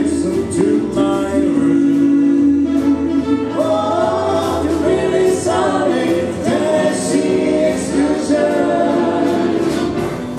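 Live swing big band with a vocal group of four singing together in harmony, several voice lines moving at once over the band, with cymbals keeping a steady beat.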